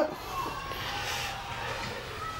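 Steady low background noise of a small room, with no distinct events.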